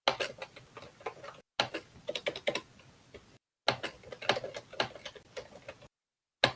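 Typing on a computer keyboard: irregular runs of key clicks, several a second, picked up by an open web-conference microphone. The audio cuts out completely twice, briefly.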